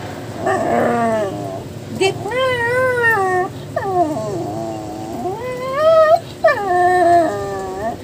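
A small dog 'talking': a string of drawn-out, howling moans, each sliding up and down in pitch, about half a dozen calls one after another.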